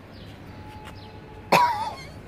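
A short, sudden vocal sound from a person, about one and a half seconds in and well above the quiet background, wavering briefly in pitch before it stops.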